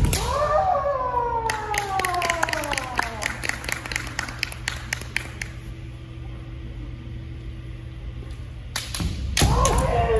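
Kendo fencers' long kiai shouts, each falling in pitch, following a sharp strike at the start and again near the end. In between comes a run of quick clacking knocks, about five a second, from the bamboo shinai.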